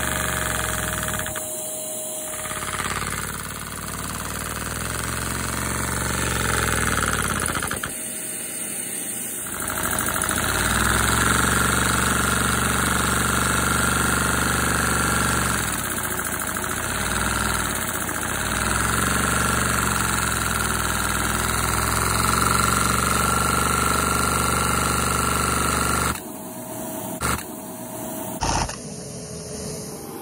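LEGO vacuum engine running: a steady mechanical drone with a low hum and a high whine. It drops out briefly about two seconds in and again for over a second about eight seconds in, then weakens near the end.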